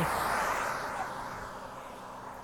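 A vehicle passing on the road, its tyre and road noise fading steadily away.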